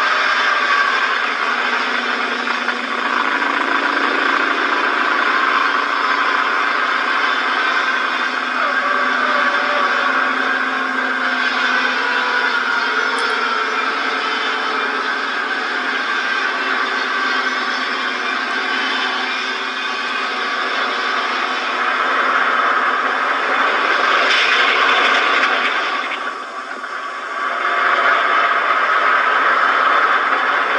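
Bus engines running in an old film soundtrack, heard as a steady, thin noise with no bass, briefly quieter a little before the end.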